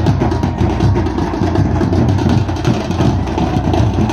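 Procession drums beaten at a fast, steady rhythm as music for dancing.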